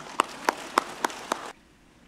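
Steady rhythmic hand clapping, about three claps a second, that stops suddenly about one and a half seconds in.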